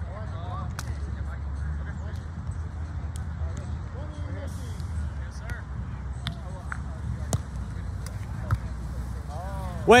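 Outdoor ambience at sand volleyball courts: a steady low rumble, faint voices of players, and a few sharp slaps, volleyballs being struck on the courts.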